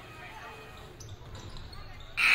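A basketball being bounced and shot at the free-throw line in a gym, with a couple of faint knocks about a second in, over low crowd chatter.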